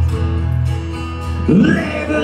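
Live acoustic guitar playing through a PA: sustained strummed chords ringing on, with a sudden louder attack about one and a half seconds in.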